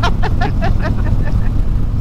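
Harley-Davidson Road King's V-twin engine running at steady highway cruising speed, mixed with continuous wind and road noise as a low, even rumble. Faint voices are heard in the first second.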